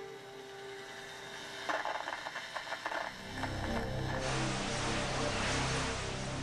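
Soft music tones fade out, followed by a spell of rattling clicks and then a growing low rumble with a broad hiss.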